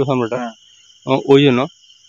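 Crickets trilling steadily at night under a man's voice speaking in two short phrases.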